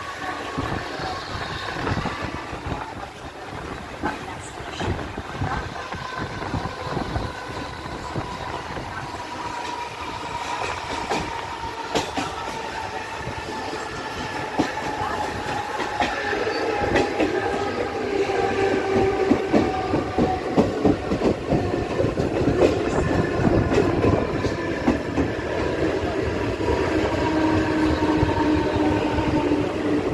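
Mumbai suburban electric local train running, heard from its open doorway: the wheels clatter over the rail joints, under a steady whine that slowly falls in pitch. The train gets louder in the second half.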